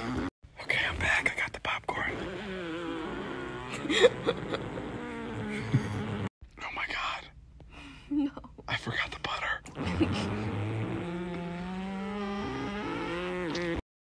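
A man's voice making sounds with no clear words. It goes on with brief breaks and cuts off suddenly just before the end.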